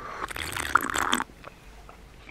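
Sucking a thick blended iced drink (a strawberry crème frappuccino) up through a thin metal straw: a hissing slurp lasting about a second, then it stops.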